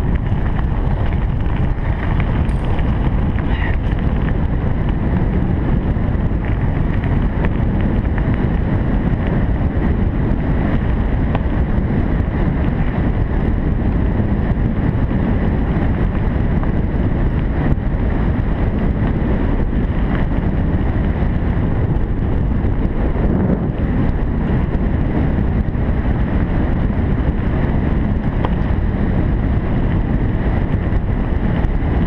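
Steady wind buffeting the microphone of a camera carried on a moving bicycle, mixed with the low rumble of riding over a gravel track.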